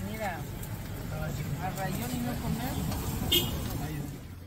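Indistinct voices talking over a steady low rumble, with one short, sharp high clink a little over three seconds in.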